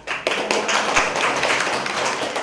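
Audience clapping, a dense run of hand claps starting about a quarter second in.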